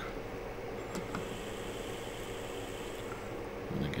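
Steady room hum with two faint short clicks about a second in.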